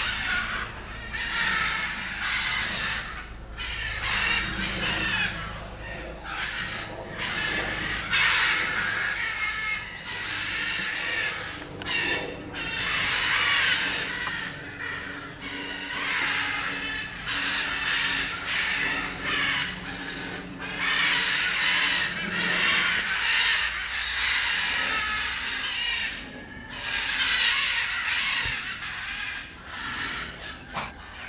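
Macaws squawking loudly, call after call in repeated bursts with short breaks between them.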